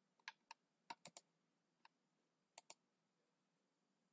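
Near silence broken by about nine faint, sharp clicks of computer input: a quick cluster in the first second or so, one more near two seconds in, and a close pair later.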